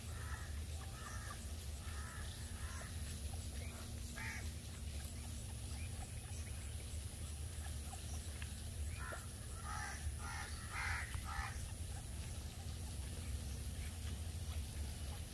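Short, harsh bird calls repeated in runs: several in the first three seconds, one about four seconds in, and another run of about six calls near the middle to late part. Under them is a steady low rumble.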